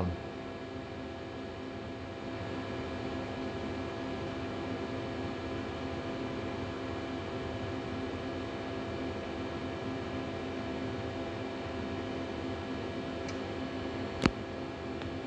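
Steady machine hum and fan noise with several held tones, from powered-up shop machinery such as the running CNC lathe and its control cabinet. It steps up slightly about two seconds in, with a faint click near the end.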